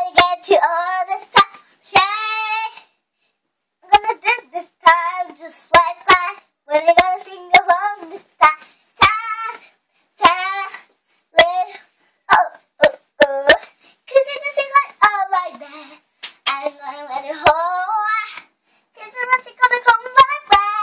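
A young girl singing on her own in short phrases with brief pauses, with frequent sharp hand claps through the song.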